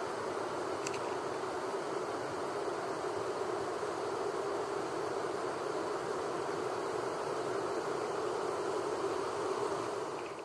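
River water rushing over rapids: a steady, even rush that holds the same level throughout.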